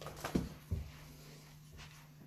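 Two or three dull thumps in the first second, then only a steady low hum.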